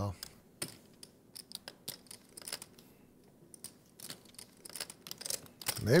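Scattered light clicks and clacks at a low level, irregular, a few each second, before a man's voice starts near the end.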